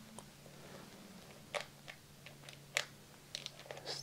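Hard plastic case of disposable tonometer probes handled and turned in the hands: a few faint, scattered clicks and taps, bunching up near the end, over a low steady hum.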